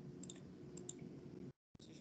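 A few faint computer mouse clicks over low, steady microphone background noise, which drops out for a moment near the end.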